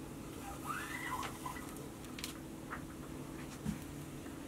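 Faint handling sounds of paracord being worked through a metal O-ring: soft rustles and a few light clicks, with a brief faint squeak about a second in, over a steady low hum.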